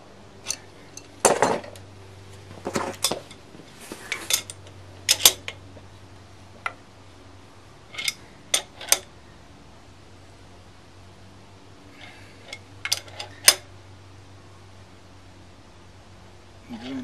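Metal clinks and clanks from wrenches working the nut of a steel harmonic balancer installer as it presses the damper pulley onto the crankshaft of a Ford 300 straight six. The clinks come in short clusters, with a lull a little past the middle.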